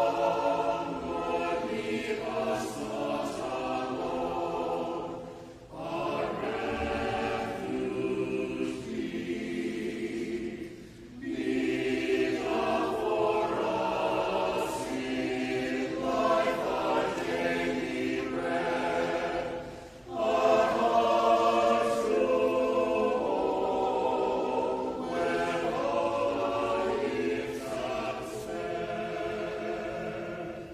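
Mixed church choir singing a slow choral piece in long phrases, with three brief pauses between them.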